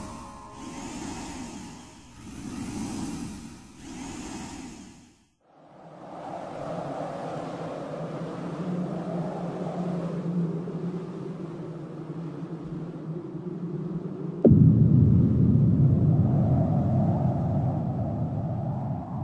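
Sound design for a closing logo sting: three swelling whooshes, a brief drop to near silence, then a low rumbling drone with a steady hum. About fourteen and a half seconds in, a sudden loud boom comes in and carries on as a louder rumble.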